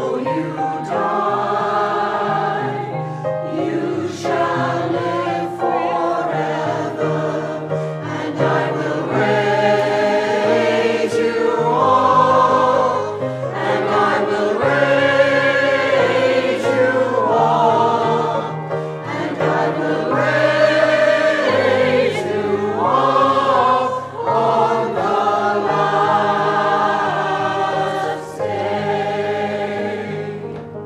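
Church choir singing a hymn in parts over low, held accompaniment notes that change with each chord. The singing eases off near the end.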